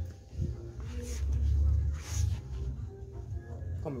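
Low rumble of a handheld camera being moved about, loudest around the middle, over faint background music.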